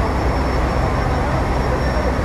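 Steady low rumble of engines on a ferry's vehicle deck, with background voices and a faint high whine.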